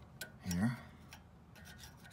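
A few faint, light clicks and rubbing of hand tools working at a rear disc-brake caliper.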